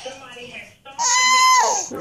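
A baby's high-pitched squeal about a second in, held level for most of a second and then falling away.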